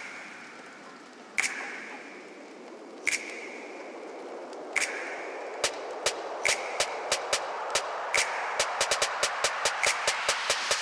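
Soundtrack music build-up: a rising swell of noise under sharp drum hits, spaced well apart at first, that speed up into a fast roll near the end.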